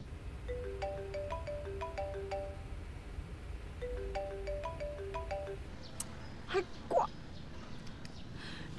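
Smartphone ringtone: a short melody of bright, marimba-like notes, played twice over a low steady hum. Two short rising chirps come near the end.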